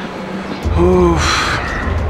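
A man's short voiced sound, followed at once by a breathy gasp, about a second in, over a low steady rumble.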